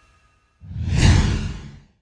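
A single whoosh sound effect that swells in about half a second in, with a deep low rumble under it, and dies away near the end. The faint tail of fading music comes just before it.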